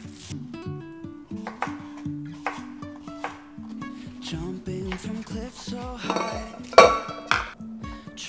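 Background music with a steady beat, over kitchen clinks and knocks of dishes and utensils being handled, the loudest a short clatter near the end.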